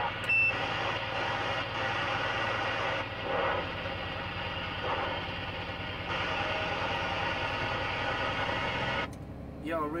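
CB radio on channel 19 receiving a harsh, noisy incoming signal with a steady hum and garbled voices in it. A short high beep sounds just after the start, and the signal drops out about nine seconds in.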